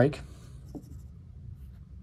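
Faint handling sounds of a plastic Lego baby triceratops figure being set down on the table, with one light click about three-quarters of a second in.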